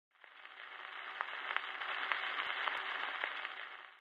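Surface hiss and crackle of a 78 rpm gramophone record turning in its lead-in groove, with sharp clicks every half second or so. It fades in about a quarter second in and fades out near the end.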